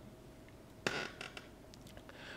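Quiet room tone with one short sharp click just before one second in, followed by a few fainter ticks.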